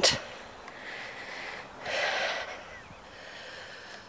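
Faint outdoor background with one brief, soft rush of air across the microphone about two seconds in, breath-like and without any pitch.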